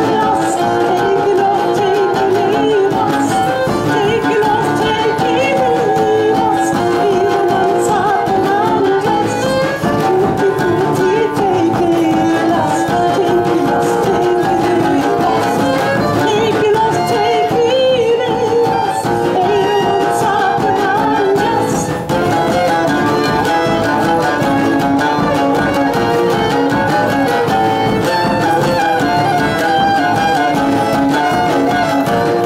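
Live acoustic folk band playing a Romani song: fiddle, oud and acoustic guitar over a large drum beaten with a stick, running on without a break.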